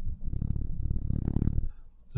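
A low rumbling sound from the narrator close to the microphone, lasting about a second and a half, like a breath or a low drawn-out murmur.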